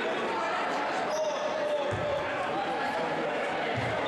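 Gymnasium crowd murmur with distant voices, and two dull thumps of a basketball bouncing on the hardwood floor, one about halfway through and one near the end.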